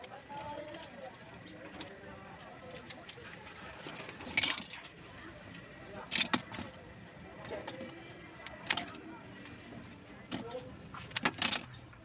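Scissors snipping fishtail fern leaves and stems: a handful of sharp cuts at irregular intervals, some in quick pairs, with leaves rustling between them.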